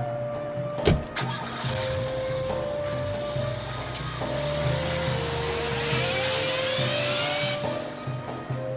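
A car door shuts with a sharp slam about a second in. The car then moves off, its engine and tyre noise running for several seconds over background music with long held notes.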